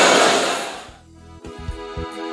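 A whole congregation praying aloud at once, a dense wash of many voices, fading out within the first second. About a second and a half in, keyboard music with a steady beat starts.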